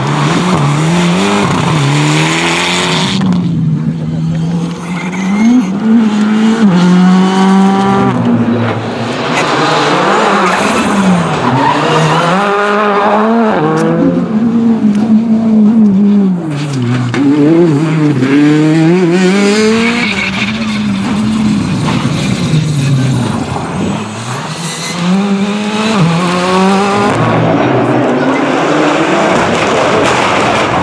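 Rally cars, among them a Mitsubishi Lancer Evolution X and a Peugeot 208, driven flat out on a stage. The engines rev hard and drop sharply at each gear change, over and over, as successive cars pass.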